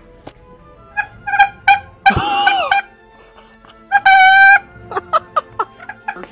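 A noisemaker sounding a series of horn-like honks. There are a few quick blips, then a wavering honk about two seconds in, then a longer steady honk around four seconds in, then more quick blips near the end.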